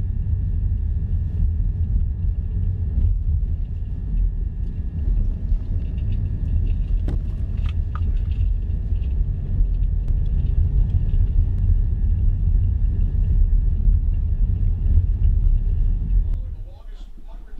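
Low, steady rumble of a car heard from inside the cabin, with a couple of light clicks about halfway through.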